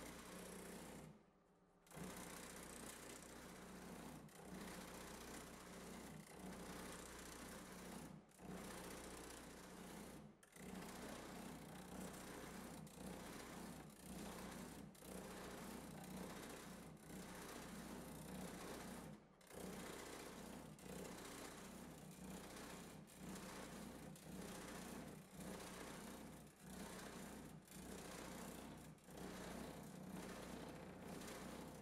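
Pullmax reciprocating metal-shaping machine running steadily and faintly with thumbnail shrinking dies, its ram working a sheet-metal panel to shrink the metal. The sound dips briefly every second or two, once almost to silence about a second in.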